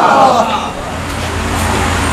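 A man's amplified voice trailing off, then a steady low rumble under background noise.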